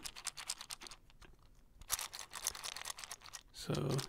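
Fast, light finger tapping on a small hard object held right at the microphone: a quick run of small clicks that thins out about a second in and picks up again about two seconds in.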